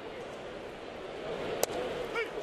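Ballpark crowd murmur, then a single sharp pop about a second and a half in as a curveball smacks into the catcher's mitt for a called third strike.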